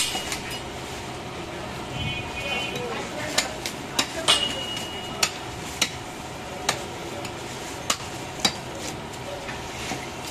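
Heavy butcher's cleaver chopping through a skinned goat head on a wooden chopping block: about eight sharp chops at uneven intervals, starting about three seconds in.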